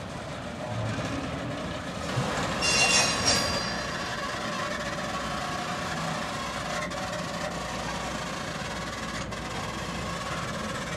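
Passenger cars rolling slowly along the track with a steady rumble. A brief high-pitched metallic squeal comes about three seconds in, and there are a couple of sharp clicks later on.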